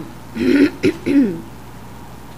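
A person clearing their throat: three short rasping bursts within about a second, the middle one briefest.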